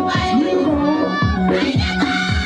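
A group of women singing together over a low drum beat that falls in pitch on each stroke, about two beats a second.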